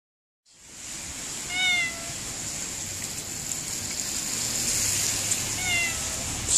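A black-and-white domestic cat meowing twice, two short meows about four seconds apart, over a steady hiss of rain.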